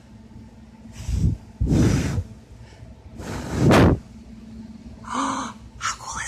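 Three puffs of breath blown through a bubble wand, hitting the microphone, the second longer and the third the loudest.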